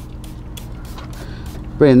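Trigger spray bottle of cleaner squirting in quick repeated pumps: several short hisses in a row, over a steady low hum.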